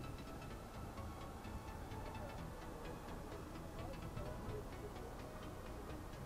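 Motorcycle engine running at low speed, a steady low rumble with a rapid, regular light ticking over it.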